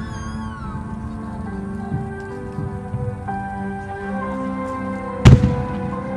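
Music from the fireworks show's soundtrack plays with steady held tones. A single loud firework bang cuts through it about five seconds in.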